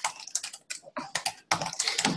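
Typing on a computer keyboard: an irregular run of quick key clicks, with a brief pause about halfway through.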